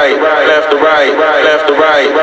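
A man's voice, processed and looped, repeating the same short vocal fragment over and over with no clear words, as a vocal sample in an electronic dance track.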